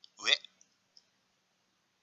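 A few short, faint clicks in the first second: a bead-click sound effect for soroban beads being moved.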